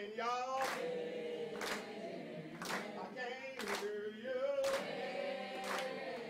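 A man singing a cappella while a roomful of diners claps along in time, about one clap a second.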